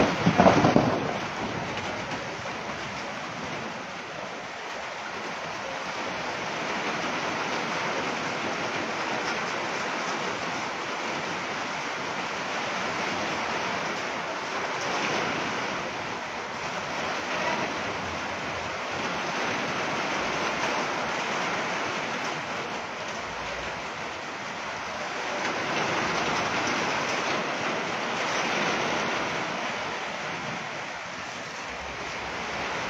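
Heavy rain falling on corrugated metal sheet roofs: a steady, dense hiss that swells a little midway and again near the end. There is a brief louder burst of noise in the first second.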